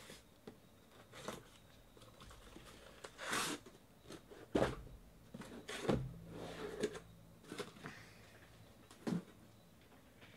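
Cardboard shipping case being handled and lifted off a row of boxed trading-card packs: cardboard scraping and sliding, with a few short knocks as boxes meet the table, the loudest about four and a half and six seconds in.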